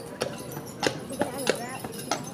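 Carriage horse walking on a paved path, its hooves striking in a slow, uneven clip-clop of a few sharp knocks.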